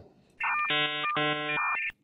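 A short electronic ringtone-like tone, buzzy and steady in pitch, starting about half a second in. It runs for about a second and a half, with a brief break in the middle.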